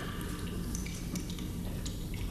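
Water dripping in a few irregular plinks over a steady low hum.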